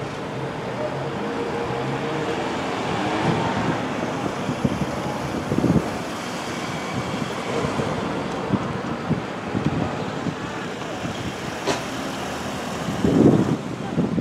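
Street traffic noise: a pickup truck passing close by and pulling away, over a steady background of town traffic, with brief louder noises about six seconds in and again near the end.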